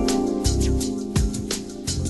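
Instrumental break music with a steady beat and a bass line under sustained chords.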